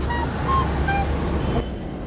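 Motorbike engine running at a steady low idle, with a few short high beeps in the first second.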